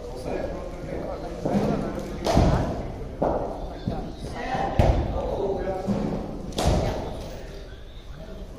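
Cricket balls striking bat, pads, mat and netting in an echoing indoor practice hall: about five sharp knocks at uneven intervals.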